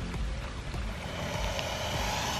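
Shallow creek water sloshing and lapping around a man wading beside an alligator, a steady watery rush that grows a little louder about a second in.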